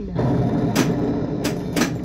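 Whirlwind pinball machine playing a low, steady synthesized game sound, cut by three sharp mechanical knocks from the playfield, the last two close together near the end.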